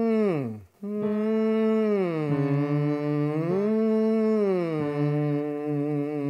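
A man's nasal 'ng' hum, sung with the tongue stuck out as a tongue-tension exercise. A short falling slide is followed by held notes that step down, back up, and down again.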